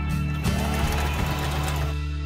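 Electric domestic sewing machine running steadily as it stitches lace, with background music playing over it.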